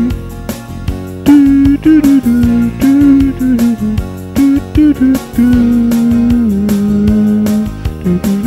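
Yamaha home keyboard playing a techno tune. A sustained, guitar-like lead melody slides between notes over a regular drum beat, with one long held note dropping lower about two-thirds of the way through.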